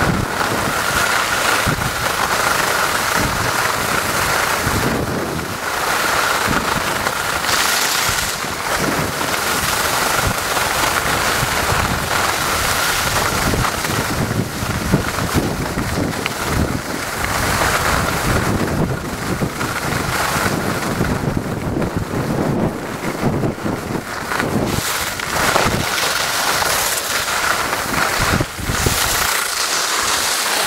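Steady, loud wind rush on the microphone of a camera carried downhill by a skier at speed, surging and easing as the turns go, mixed with the hiss of skis running on the snow.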